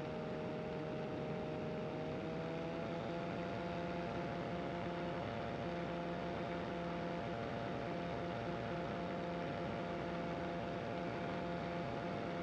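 Ultralight aircraft engine droning steadily in flight, with a steady whine whose pitch rises slightly about two seconds in and then holds.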